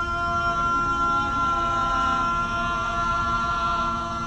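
Choir-like music: voices holding a long, steady chord.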